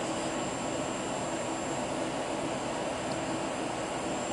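Steady, even hum and hiss of room air conditioning, unchanging and without breaks.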